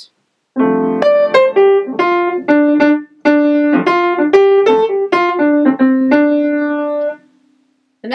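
Piano: a chord struck about half a second in, then a line of single melody notes improvised on the D Dorian mode, with a brief break around three seconds in. It ends on a held note that fades out shortly before the end.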